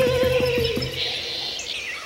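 A held sung note with vibrato ends over a quick run of drum strokes. For the last second the music drops away, leaving high bird calls and chirps.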